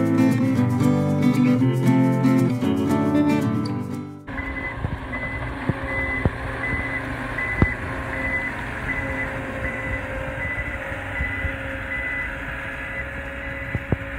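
Guitar music for about the first four seconds, then a sudden cut to a Prinoth Leitwolf snow groomer's diesel engine running close by, with its reversing alarm beeping steadily at a regular pace.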